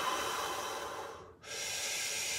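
A man taking slow, deep belly breaths, heard as long rushes of air: one breath ends about three-quarters of the way through, and after a brief pause the next begins.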